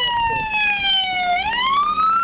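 Police siren wailing: one tone with overtones sliding slowly down in pitch, then turning and rising again about two-thirds of the way through.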